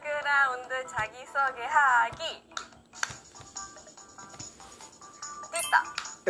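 A young woman's voice speaking brightly in Korean for about two seconds, then a short variety-show music cue with quick stepping notes and a few clicks.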